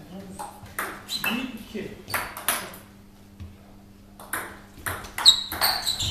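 Table tennis rally: the celluloid ball clicking off paddles and the table at about three hits a second, with a pause of about a second midway before play picks up again.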